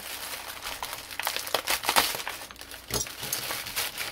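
Mailer bag and its packing crinkling and rustling as they are handled and opened, with irregular crackles and a few sharper clicks.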